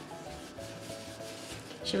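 Paper napkin rubbed over the shell of a dyed egg, a soft dry rubbing, with faint background music underneath.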